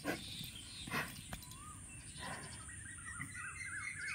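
A small bird chirping a quick, repeated zigzag warble through the second half, after a few short bursts of noise in the first half.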